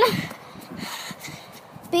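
Footsteps running on grass: faint, irregular low thumps with light rustling, under about a second and a half of near-pause in the shouting.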